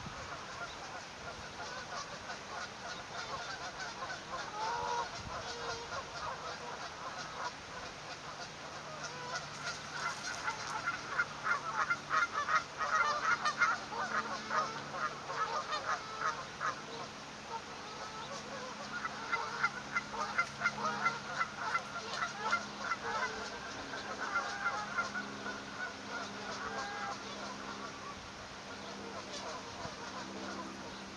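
Waterfowl calling: two long runs of rapid, repeated honking calls, one about a third of the way in and another starting about two-thirds through, with a few short single calls around them.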